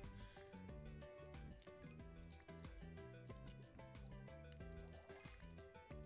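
Faint online slot game background music: a bouncy tune of short notes over a bass line with a steady beat.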